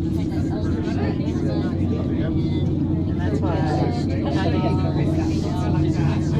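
Steady low hum and rumble inside an aerial tramway cabin as it runs along its cables, with passengers talking in the background.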